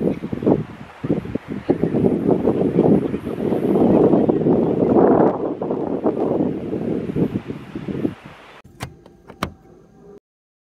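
A loud, rough rushing noise that swells to a peak about halfway through and fades away by about eight seconds, followed by two sharp clicks near the end.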